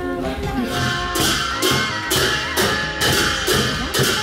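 Large brass hand cymbals clashed in a steady rhythm with a drum, as Sakela festival music. The clashes come about twice a second from about a second in.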